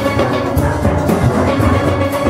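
A large steel orchestra playing live: many steel pans struck together in a full, continuous ensemble, with percussion underneath.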